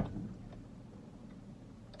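Faint, steady low hum inside a vehicle cab: quiet room tone with no distinct event.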